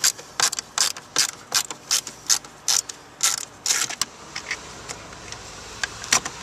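Ratcheting driver clicking in quick repeated strokes as it backs a small Torx screw out of a stereo's metal mounting bracket. The clicks thin to a few after about four seconds.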